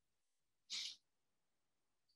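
Near silence broken once, about three quarters of a second in, by a short breathy puff of noise from a person near the microphone.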